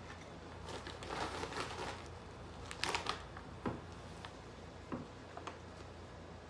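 Plastic snack bag crinkling as baked pea crisps are poured out of it onto a plate, followed by a few separate sharp clicks and knocks.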